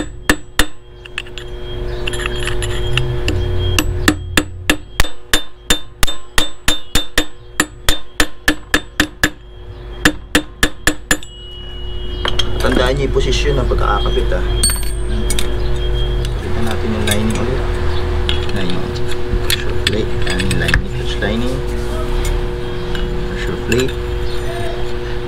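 Hammer striking a punch or screwdriver held against the clutch hub nut's lock washer, staking it so the nut cannot turn loose. It is a run of about twenty quick metal-on-metal strikes, roughly three a second, between about four and eleven seconds in. Scattered lighter clicks and clinks of parts being handled follow.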